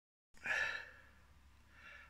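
A man's short breathy exhale, a sigh, about half a second in, followed by a faint breath in just before he starts talking.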